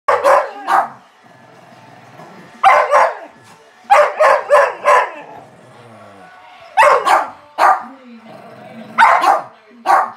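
Dog barking in quick bursts of two to four barks, repeated several times with short pauses between.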